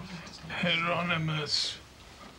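A man's voice giving a drawn-out "uh", ending in a short hiss.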